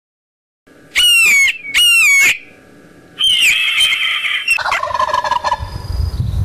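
Bird-call sound effects: two loud screeches about a second apart, each falling in pitch, then a longer call and a turkey's gobble, over a low rumble.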